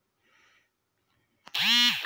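A phone's incoming-message notification tone, a single loud tone that rises and falls in pitch for about half a second, starting about 1.5 s in after near silence. It signals the arrival of the network's IMEI-validation confirmation SMS.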